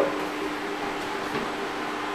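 Steady low hiss with a faint hum and no distinct events: indoor room tone.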